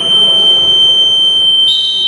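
Futsal timekeeper's electronic buzzer sounding one long, loud, steady high tone. A second, higher tone joins about three-quarters of the way in.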